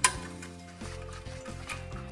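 A sharp metallic clink at the very start as a steel worm-drive clamp is handled against a powder-coated exhaust heat shield, over steady background music.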